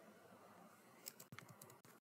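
Faint computer keyboard keystrokes: a quick run of about six taps in the second half, as text in a search field is deleted and retyped.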